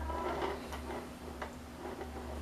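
A few light clicks as a cake stand is handled and turned, over a steady low hum.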